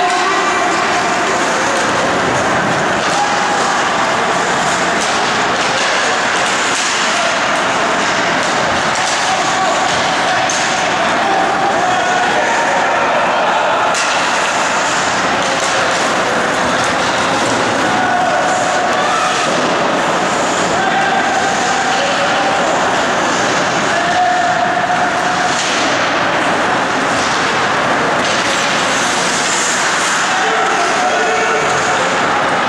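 Ice hockey game sound in a rink: a steady din of players' and spectators' voices calling out indistinctly, with skates and sticks on the ice and a sharp knock of the puck against a stick or the boards about halfway through.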